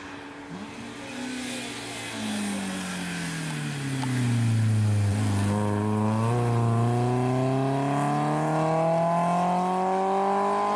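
Rally car's engine easing off as the car slows into a corner, its pitch falling, then one long rising pull as it accelerates out and away. It is loudest from about halfway through, as the car passes close.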